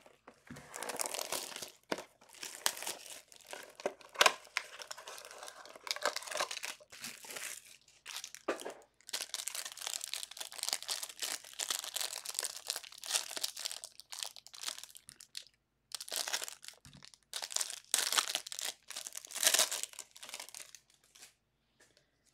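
Foil trading-card pack wrapper being torn open and crinkled by hand, in irregular bursts with a couple of short pauses.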